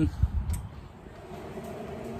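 Rec Teq 700 pellet grill's control-panel power button pressed to switch the grill on, with a couple of short clicks or knocks just after the start. A faint steady hum follows from about a second in.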